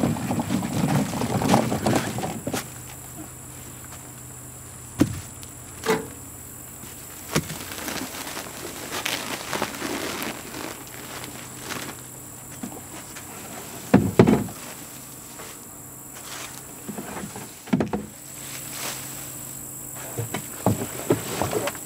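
Footsteps and handling noise, then a few separate sharp knocks and thumps as the brick-weighted tarp is lifted off a bathtub worm bin, over a steady background of insects.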